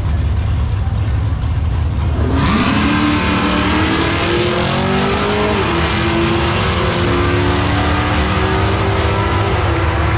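Two drag-race cars idling with a heavy low rumble at the start line, then launching together about two seconds in with a sudden loud burst of engine noise. Their engines climb in pitch down the track, dip once about halfway through at a gear shift, then climb again.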